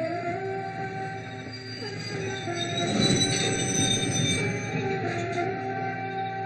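Sustained background film score, joined by a train's rumble and high wheel squeal that swell in the middle and are loudest about three seconds in.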